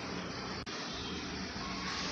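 Steady rushing background noise with no speech, broken by a momentary gap in the sound about two-thirds of a second in.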